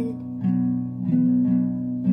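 Acoustic guitar strumming chords, with fresh strums about half a second in and again just past a second, each chord left ringing.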